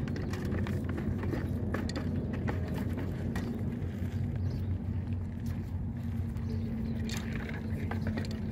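Ostriches pecking feed from a hand-held plastic bowl and fence-mounted feed cups: irregular sharp clacks of beaks striking the containers, over a steady low rumble.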